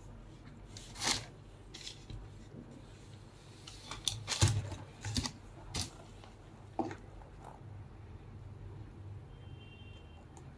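Handling noise from a sneaker being turned over in its cardboard shoebox: scattered short rustles and taps of paper, cardboard and leather. The loudest cluster comes about four to six seconds in.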